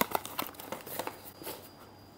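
Handling of a rigid cardboard box and the small plastic parts inside it: one sharp click at the start, then a few lighter taps and rustles that fade away.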